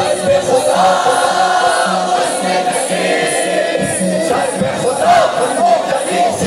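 A large crowd of voices singing a noha, a Shia lament, in unison over a steady beat about twice a second.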